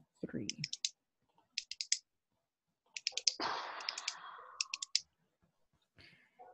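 Quick runs of sharp clicks at a computer, four or five clicks at a time, coming in four bursts as a meeting host works the controls. A rush of noise lasts about a second and a half in the middle.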